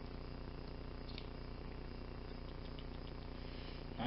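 Steady low background hum with a few faint, small metallic clicks from a Schlage Primus lock cylinder plug being handled, one about a second in and a few close together near three seconds.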